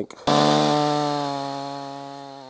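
Perla Barb 62cc two-stroke chainsaw engine running with a steady note, easing slightly lower in pitch and fading away.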